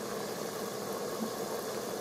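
Pot-roast cooking juices boiling steadily in an electric pressure cooker's inner pot, being reduced to thicken into gravy.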